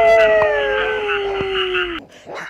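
A single long canine howl, like a wolf's or jackal's, that holds and then slides slowly lower in pitch before stopping near the end.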